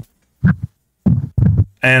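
Two short, wordless bursts of a man's voice, about half a second and a second in, between sentences of talk.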